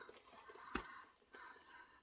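Near silence: faint room tone, with one short click about three-quarters of a second in.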